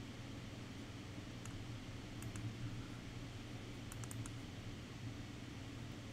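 A few faint computer mouse and keyboard clicks, single ones about a second and a half and two seconds in and a quick cluster about four seconds in, over a steady low room hum.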